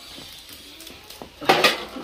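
Metal cookware and utensils clattering: faint small knocks, then a short, loud metallic rattle about a second and a half in.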